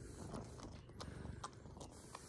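Domestic cat purring steadily, held close against a person's chest, with a few soft clicks of handling.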